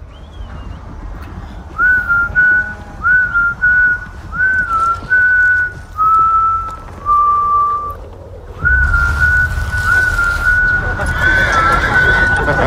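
A person whistling a slow tune, a single clear note stepping and sliding between a few pitches, the later notes held longer. Underneath runs a low steady rumble that grows louder about nine seconds in.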